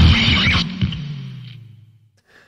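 Heavy distorted bass, the closing note of a noisecore track, rings out and fades away over about two seconds, with a last hit about half a second in.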